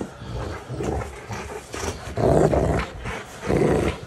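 Rottweiler growling in a few short, rough bursts, the loudest two about halfway through and near the end.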